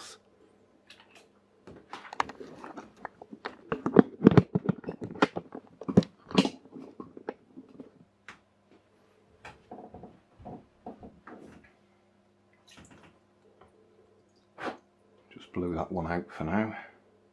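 Clockwork toy boat being wound and handled: a run of quick, irregular clicks and rattles for about five seconds, loudest near the middle, then fainter scattered clicks. A faint steady hum runs underneath.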